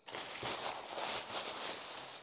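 Tissue paper crinkling and rustling as a shoe wrapped in it is pulled out of a shoebox.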